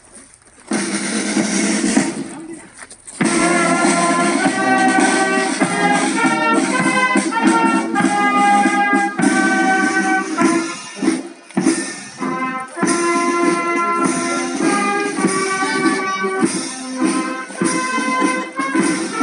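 Brass band led by cornets playing a march: a short opening phrase, a brief break, then continuous playing.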